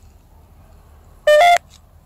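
A short electronic beep about a second in: two quick tones, the second a step higher than the first, lasting about a third of a second and stopping abruptly.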